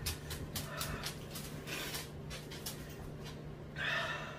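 A person chewing, with irregular wet mouth clicks and smacks, then a louder puff of breath through pursed lips near the end while eating a superhot chili piece.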